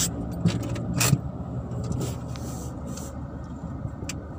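Car engine idling, heard from inside the cabin as a steady low hum. A few sharp knocks or clicks come over it, the loudest about a second in.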